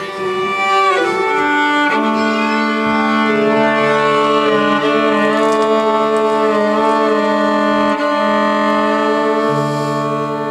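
Violin bowed in long, held notes with a slow vibrato. Beneath it runs a steady drone, with lower notes entering about four seconds in and again near the end.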